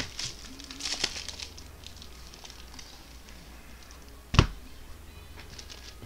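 A foil Panini Select football card pack being torn open, its wrapper crinkling and crackling in the first second or so, then handled quietly. A single sharp knock, the loudest sound, about four seconds in.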